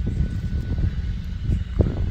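Wind buffeting the microphone outdoors: a low, irregular rumble, with a few faint clicks.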